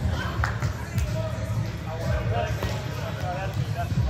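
A few sharp slaps of a volleyball being hit during a rally, mostly in the first second or so, with voices from the court following.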